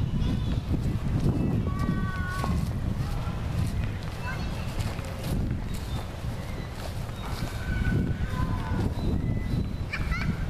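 Wind rumbling on the microphone and footsteps on grass while walking, with a few faint, short high-pitched calls in the background.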